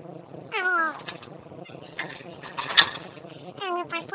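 Two high, falling, meow-like calls, one about half a second in and one near the end, with a short scratchy noise between them.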